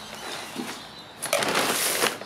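A plastic sack of sand being handled. A loud crinkling rustle starts a little over a second in, after a quiet start.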